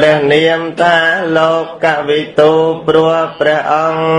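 Buddhist chanting by a male voice: a melodic, syllable-by-syllable chant over a steady low held tone.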